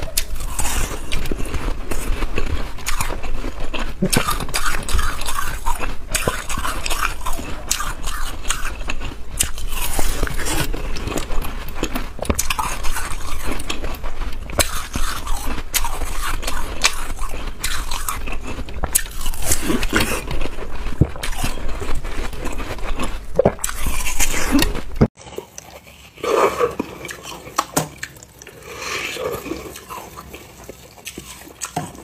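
Frozen white ice being bitten and chewed close to the microphone: a dense run of crisp crunches and crackles that stops suddenly near the end, leaving quieter sounds.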